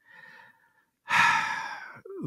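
A man breathing audibly into a close microphone: a sigh-like breath that starts about a second in and fades away over about a second, with a fainter short breath sound just before it.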